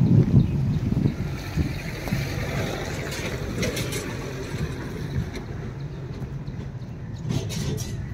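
Low truck engine rumble, loudest in the first second and then fading into steady outdoor background noise, with wind buffeting the microphone.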